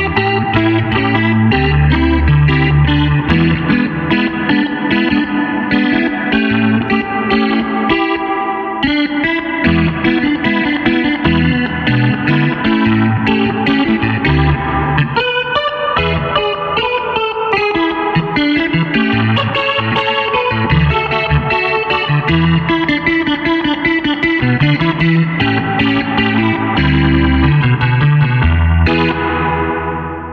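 Clavinet played through effects with distortion and chorus: a funk jam with a low bass line under choppy chords and single-note lines higher up.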